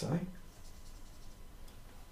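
Faint marker pen on a whiteboard, a short stroke drawing a dot.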